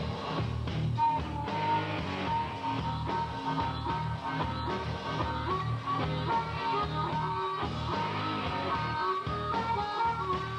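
Live rock band playing: electric guitar over bass and drums, with a sustained high lead line held over the band.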